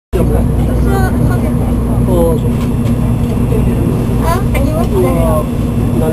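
People talking over the steady low hum of a Shinkansen carriage interior.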